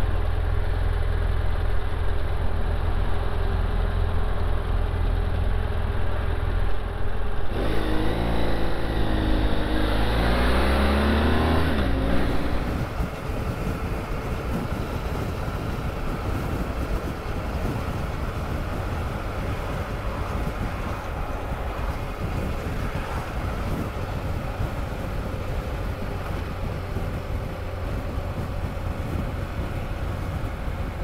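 BMW F800 GSA motorcycle's parallel-twin engine running as it rides, with the engine note rising through an acceleration from about eight to twelve seconds in. It then changes abruptly to quieter, steady wind and engine noise at road speed.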